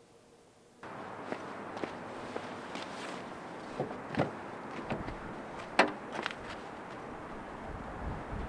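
Near silence that gives way, about a second in, to a steady outdoor background hiss, with a few light footsteps followed by the clicks and knocks of a car's rear door being unlatched and swung open. The sharpest clack comes a little after the middle.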